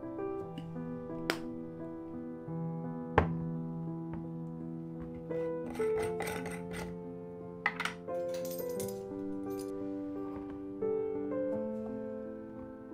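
Soft piano music with kitchen handling sounds over it: a sharp clink about three seconds in, then scraping and clinking midway as a metal screw lid is turned and lifted off a glass sugar jar.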